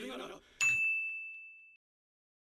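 A single high, clear ding that rings for about a second, fades, then cuts off to dead silence: an added sound effect marking a pause in the playback.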